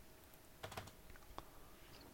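A few faint keystrokes on a computer keyboard, in near silence.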